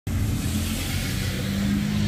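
A vehicle engine running steadily, a low hum with an even hiss over it.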